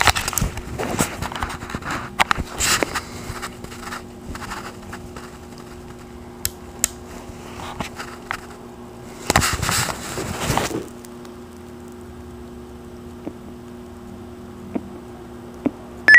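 Handling noise from a mobile radio and its cables: clicks and rustling, a couple of sharp clicks, and a louder scraping clatter about two-thirds of the way in. Under it runs a steady faint low electrical hum.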